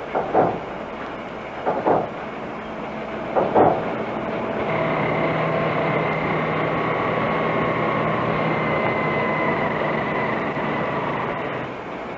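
A few short sounds in the first seconds, then steady machine noise with several held tones that starts about four and a half seconds in and fades near the end.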